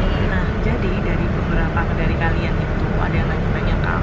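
Steady low rumble of a coach bus's engine and running gear heard inside the passenger cabin.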